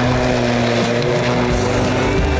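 Greenworks 40-volt cordless electric lawn mower running at a steady pitch, its blade cutting through tall grass.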